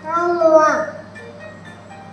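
Speech over light background music: a voice says the Thai word 'khop khun' (thank you) in the first second, then only the quieter music continues.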